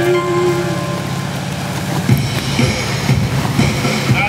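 Ski boat's inboard engine running with a steady low drone and a growing rumble as the boat passes close, under the last held sung note of a music track, which ends about half a second in.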